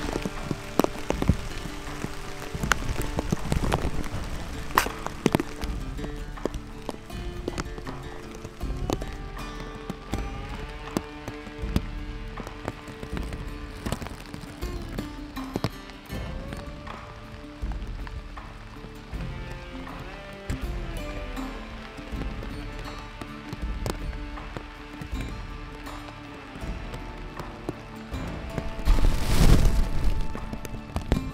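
Background music with held, slowly shifting notes, over faint scattered clicks. A short, louder noisy swell comes just before the end.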